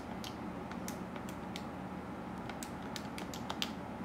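Keys being pressed: about a dozen light, irregularly spaced clicks, as when a sum is being keyed in. A faint steady hum runs underneath.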